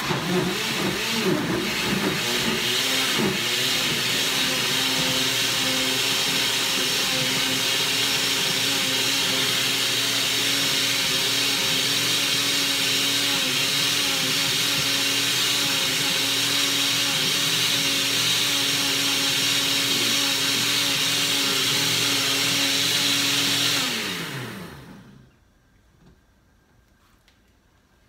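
Countertop blender running, puréeing chopped tomatoes with onion and garlic. The motor's pitch wavers for the first few seconds as the chunks break up, then holds steady for about twenty seconds. Near the end it is switched off and the pitch falls as it spins down.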